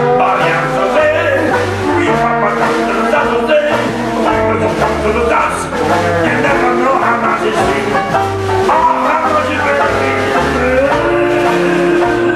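Live jazz band playing, with a man singing into a microphone over a bass line that steps from note to note about twice a second.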